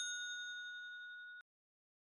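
The ring of a bell-like chime from a logo jingle dying away, then cut off abruptly about one and a half seconds in.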